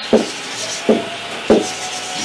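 Marker pen writing on a whiteboard: a scratchy rubbing with three short, sharper strokes about half a second apart.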